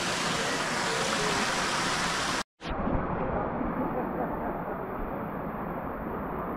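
Steady rush of flowing water in a hot-spring pool, with faint voices under it. About two and a half seconds in it cuts off abruptly, and a quieter background with low murmuring follows.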